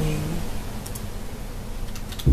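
Low, steady room noise with a couple of faint, sharp clicks, one about a second in and one near the end.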